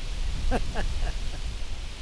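Wind buffeting the microphone, a steady low rumble, with a man's two short chuckles about half a second in.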